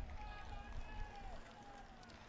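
A quiet pause between sentences: a low rumble that fades over the first half second, under faint, distant voices.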